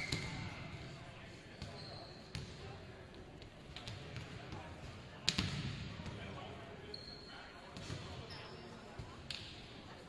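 Indistinct voices echoing in a large gymnasium, with a few sharp knocks like a ball bouncing on the hardwood court, the loudest about five seconds in. There are also a few brief high squeaks.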